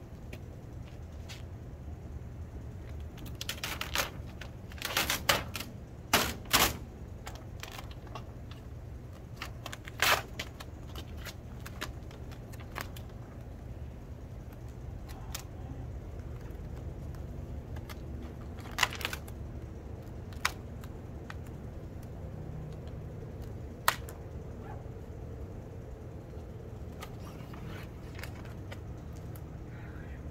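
Large plastic vinyl decal sheet crackling and snapping as it is handled, lifted off and pressed against a van's sheet-metal door panel to line it up. There is a cluster of sharp crackles about four to seven seconds in, a loud snap about ten seconds in, and a few single snaps later.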